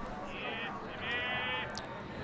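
Two drawn-out, high-pitched calls from a voice in the ballpark crowd, the second one longer, over the steady background of the stands. A short sharp click comes near the end.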